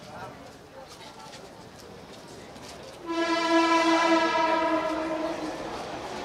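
A vehicle horn blows one long, steady, loud note for about two and a half seconds, starting about three seconds in.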